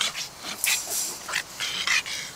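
A pug barking in a quick series of short, high yaps, about six in two seconds.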